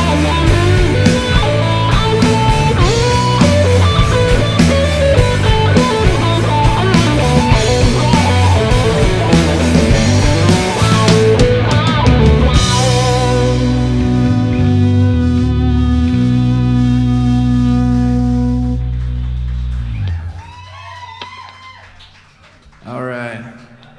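Live band playing with electric guitar over bass and drums; about halfway through the drums stop and the band holds one long chord, which cuts off near the end, leaving faint voices.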